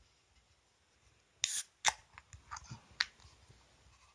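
A drinking glass and a beer can being handled: a short scraping noise about a second and a half in, then a few sharp clicks and lighter taps.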